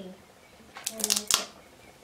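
A hardback library book being handled: a quick cluster of crisp clicks and crackles from its film-covered dust jacket about a second in, with a short voiced sound at the same time.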